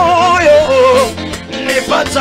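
Live African gospel praise music: a male lead singer holds long notes with a wavering vibrato, stepping down in pitch, over the band.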